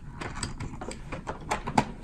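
Hard plastic toy parts clicking and knocking as the halves of a robot puppy's head shell are pressed and snapped together, a run of small irregular clicks with a louder one near the end.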